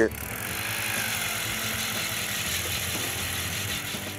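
Ice auger running, its bit boring steadily through lake ice.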